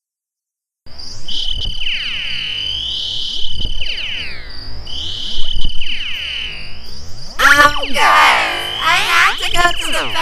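Cartoon voices and music warped by a heavy sweeping audio effect, heard as repeating rising and falling swooshes around a steady high tone. It starts about a second in and turns busier and harsher from about seven and a half seconds in.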